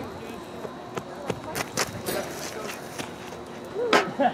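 Baseball field ambience: distant voices of players and spectators with scattered short knocks and clicks, and one louder sharp crack near the end.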